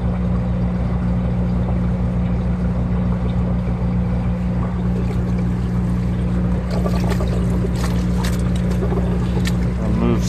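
Steady low drone of a refrigerated trailer's reefer unit running, with clicks and splashy handling noises in the second half as a hand moves the sopping wet clothes in a portable washer tub.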